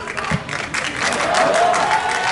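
Spectators at a football match clapping irregularly, with a voice calling out across the ground from about a second in.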